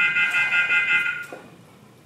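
Temperature-screening kiosk's electronic alarm: a quickly pulsing tone at several pitches that cuts off about a second and a half in.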